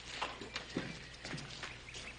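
A few soft, irregular knocks, about five in two seconds, over a low steady hum.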